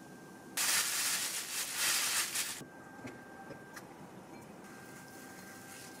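Plastic bag rustling for about two seconds as flour-dusted croquette balls are shaken in it, followed by a few light ticks and a faint rustle of breadcrumbs being handled.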